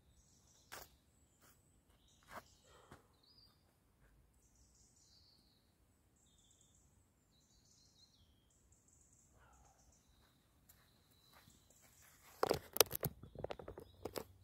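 Faint birdsong over quiet outdoor air, with a few soft knocks in the first three seconds. Near the end, a loud clatter of knocks and fabric rustle right at the microphone as the camera is handled close up.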